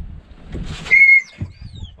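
A dog's sharp, high-pitched cry about a second in, held briefly on one pitch, then a shorter, fainter falling whine. The owners take it as a sign that the dog has pulled a muscle.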